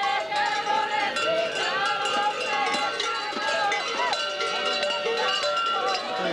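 Voices singing a Bulgarian folk song in long held notes, over a continual clanking of the large bells worn by babugeri (kukeri) mummers.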